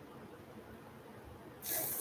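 Faint room tone, then near the end a short hiss of breath, like a sharp breath or sniff close to the microphone, lasting about half a second.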